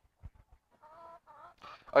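A hen in a nest box giving two short calls in quick succession as eggs are taken from under her, a sign of a protective, defensive hen.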